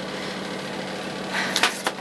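A steady low hum under an even hiss. Near the end come a short rustle and a few sharp clicks.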